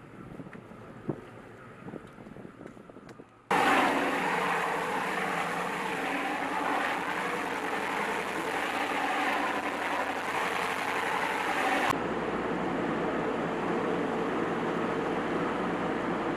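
Boats running through open sea, with rushing water and wind on the microphone. A quieter stretch with a few small knocks gives way abruptly, about three and a half seconds in, to a loud rush of water and wind as a Coast Guard patrol boat passes at speed. From about twelve seconds a steadier engine drone with water noise takes over.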